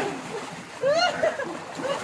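Swimming-pool water splashing as several people scuffle together in it, with a shouted voice about a second in.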